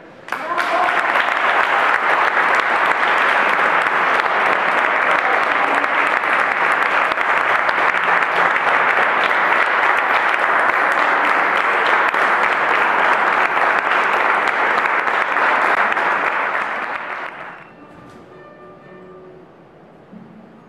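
Audience applauding. The clapping breaks out at once, holds steady and loud, and dies away after about seventeen seconds.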